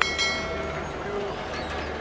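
A sharp knock followed by a metallic ringing that fades away within about a second, over a steady low background hum.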